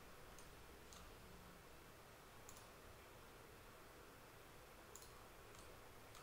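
Near silence broken by about five faint, irregularly spaced computer-mouse clicks selecting edges in CAD software.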